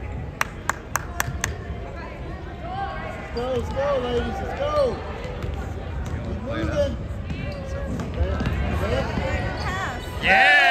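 A basketball bounced on a hardwood court, five quick bounces in the first second and a half. Gym crowd noise and short shouted calls follow.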